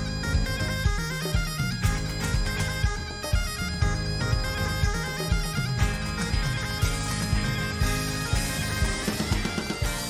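Highland bagpipes playing a melody in a live band arrangement, backed by a rock drum kit with frequent kick and snare hits.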